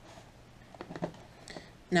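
Faint light knocks and rustling of a small plastic wireless-doorbell unit being set down into its cardboard box, a few short taps about a second in.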